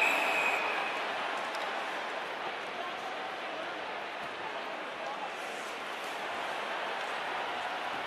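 A referee's whistle blows to stop play and ends about a second in. Under it is the steady noise of the arena crowd, which eases off over the first couple of seconds and then holds at a low, even level.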